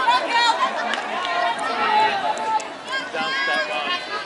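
Several women's voices calling and chattering over one another, unintelligible. This is softball players' chatter during play.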